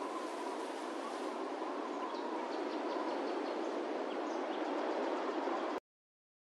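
Outro of a produced beat: a steady hiss-like ambient noise layer with a faint held tone and a few faint high chirps. It cuts off suddenly just before the end.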